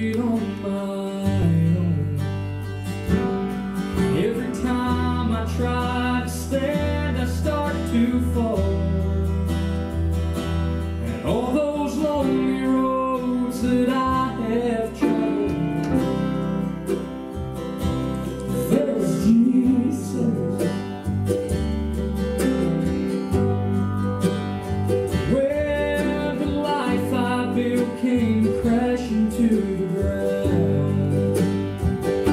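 Southern gospel song played live on grand piano, mandolin and acoustic guitar, with a male voice singing the verse.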